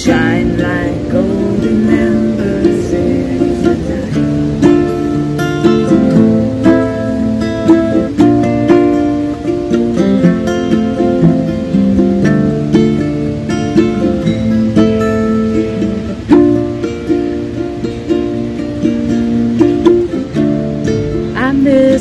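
Acoustic guitar and ukulele playing together through an instrumental break between sung verses, with steady strummed and picked chords at a slow tempo.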